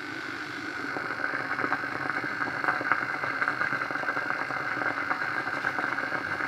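A hair dryer switches on and runs steadily, a motor whirr with an even high whine over the airflow.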